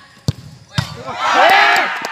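A football kicked hard in a penalty, with a second thud about half a second later, followed by several spectators shouting at once.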